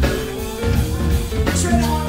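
Funk band playing live: bass line and drums with electric guitars, and singing over the top.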